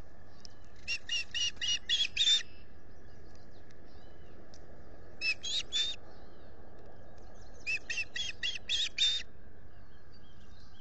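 Osprey calling: three runs of short, sharp whistled chirps, about six notes, then three, then six, growing louder within each run.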